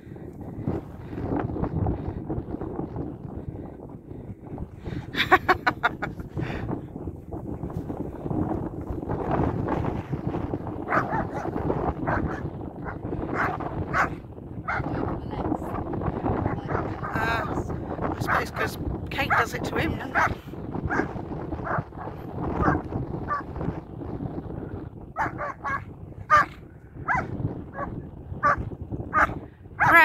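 German Shepherd dogs barking, growling and yipping as they play-fight, the sharp barks coming in clusters about five seconds in and again near the end.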